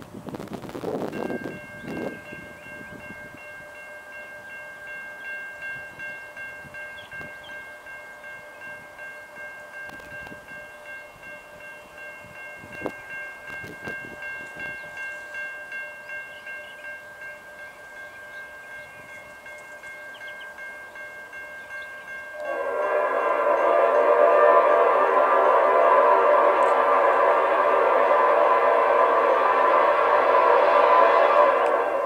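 A steady, chime-like ringing of a grade crossing bell. About 22 seconds in, the approaching Norfolk Southern EMD GP59 locomotive sounds its air horn in one long, loud blast that holds to the end.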